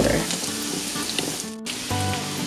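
Minced garlic sizzling in melted butter in a frying pan, under background music. The sound drops out for a moment about one and a half seconds in.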